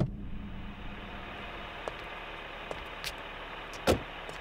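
A car sits idling with a steady low noise. There are a few light clicks, then a car door shuts with a loud thump near the end.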